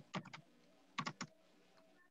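Computer keyboard typing: two short bursts of a few keystrokes each, the second about a second in.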